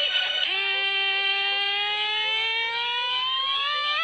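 Music: a song's long held note, starting about half a second in and slowly rising in pitch.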